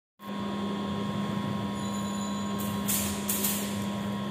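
A 125 cc motorcycle engine idling steadily, with an even hum. From about two and a half seconds in, bursts of high hiss come and go over it.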